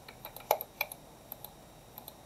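About five sharp computer mouse and keyboard clicks, spaced irregularly, the loudest about half a second in.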